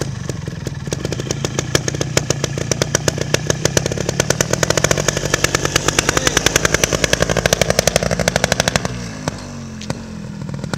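Beta trials motorcycle engine running and being revved, its firing pulses growing faster and louder over several seconds before dropping back near the end.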